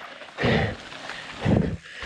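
Mountain biker's heavy breathing while riding a dirt trail: two short, hard breaths about a second apart.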